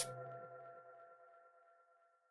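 The closing chord of outro music ringing on and fading away over about a second.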